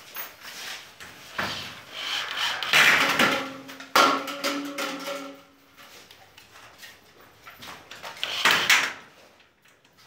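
Cordless drill/driver driving self-drilling screws through thin galvanized steel drywall profiles, the motor whirring in short runs while the metal rattles and clanks. The loudest bursts come about three and four seconds in and again near the end.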